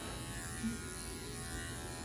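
Electric pet grooming clipper fitted with a #10 blade, running with a steady buzz as it clips the coat on a dog's head.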